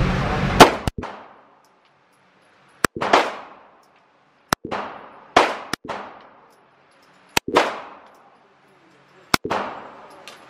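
Glock 19 Gen 4 9mm pistol fired in slow single shots, about one every two seconds, each shot ringing off the walls of an indoor range.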